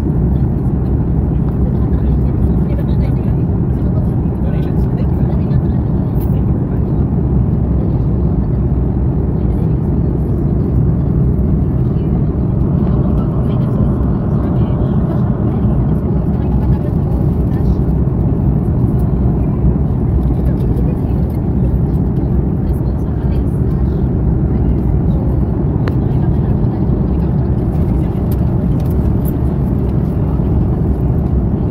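Jet airliner cabin noise in cruise flight: a steady low drone of the turbofan engines and airflow heard from inside the cabin.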